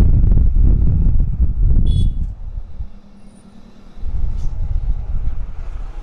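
Motorcycle ride in traffic: engine and wind rumbling on the microphone, easing off about two seconds in with a brief high squeak, then picking up again about four seconds in.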